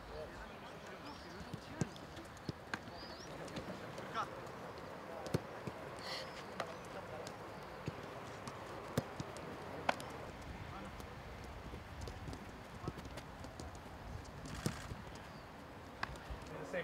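Footballs being kicked and caught in a training drill: sharp thuds at irregular spacing, one every second or two, over open-air ambience with faint distant voices.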